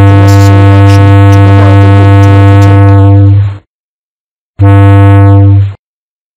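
Low-pitched ship's whistle ending a prolonged blast about three and a half seconds in, then after a second's gap giving one short blast of about a second. This is the close of the prolonged–short–prolonged–short signal by which a vessel about to be overtaken in a narrow channel shows her agreement.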